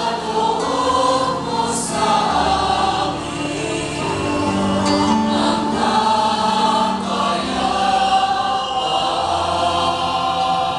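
A choir of many voices singing a hymn in long, held notes.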